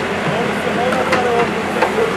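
JCB backhoe loader's diesel engine running steadily as its bucket digs into earth and stones, with a couple of sharp knocks. People talk nearby.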